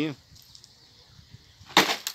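A single short, sharp splash near the end as a small hooked fish is lifted out of the pond water.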